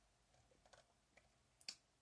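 Near silence: room tone with a few faint small clicks, the sharpest a little before the end.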